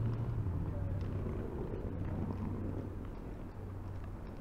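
Street traffic: a passing vehicle's low engine hum fades away in the first second, leaving steady road noise with indistinct voices of passers-by.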